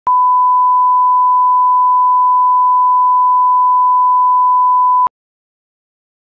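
Broadcast line-up test tone, the 1 kHz reference tone played with colour bars: a single steady pitch held for about five seconds, then cut off suddenly.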